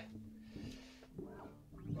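A bass note from a Gibson Thunderbird played through a Seamoon Funk Machine envelope filter, ringing out and fading away. A man starts talking quietly near the end.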